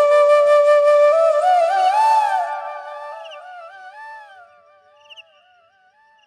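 Bansuri (bamboo flute) solo: a long held note, then a run of ornamented, bending phrases about two seconds in, after which the playing fades out over the next few seconds.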